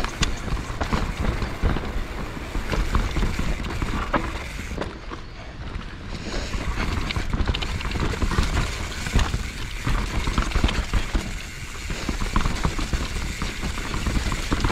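Mountain bike (a 2019 YT Capra) rolling fast down a rough dirt singletrack: tyres on dirt and roots over a steady low rumble, with the bike clattering and rattling in quick, uneven knocks throughout, easing a little midway.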